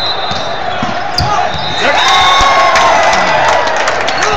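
Volleyball rally in a gym: sharp ball hits over a constant crowd noise, then players and spectators shouting and cheering, louder from about two seconds in as the rally ends.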